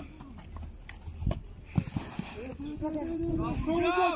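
A few dull thumps of feet and a football on an artificial-turf pitch during a goalkeeper drill, the loudest about a second in. A long, drawn-out shout starts about halfway through.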